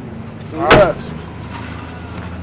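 A car's trunk lid slammed shut: one sharp bang a little under a second in.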